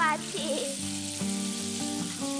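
A cartoon character's high voice is briefly heard at the start. It gives way to soft background music of held notes that change every half-second or so, over a steady hiss.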